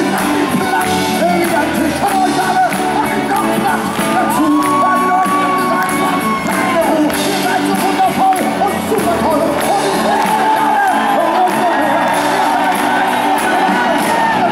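Live rock band playing, with piano and electric guitar under a male lead voice that holds long sung notes, and shouts and whoops from the crowd.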